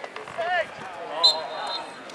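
Referee's whistle: one steady, high blast of about half a second, starting a little over a second in, stopping play as the assistant referee's flag goes up. Spectators are shouting around it.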